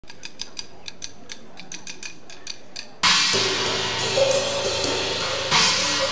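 Free improvised drumming on a drum kit with cheese rounds set among the drums and cymbals. Light, quick taps for about the first half, then a sudden cut to loud, busy drumming with washing cymbals.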